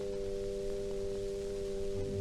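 Symphony orchestra holding a steady sustained chord, on a 1946 Columbia 78 rpm recording with a constant hiss of record surface noise.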